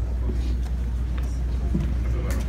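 A steady low hum with faint voices over it.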